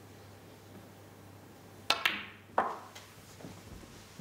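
Snooker shot: a sharp click of the cue tip on the cue ball about two seconds in, a second click a moment later as the cue ball strikes the yellow, then a louder knock about half a second after as the yellow drops into the corner pocket.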